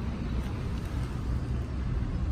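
Steady low rumble of outdoor vehicle noise, even throughout with no distinct events.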